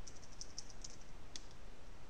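Faint, irregular clicks of a computer keyboard and mouse as values are typed into fields, with one sharper click about one and a half seconds in.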